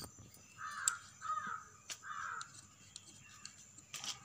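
Three harsh bird calls in quick succession in the first half, with a few sharp clicks around them.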